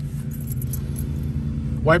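A 454 cubic-inch big-block V8 idling steadily, heard from inside the car's cabin, with a faint jingle of keys.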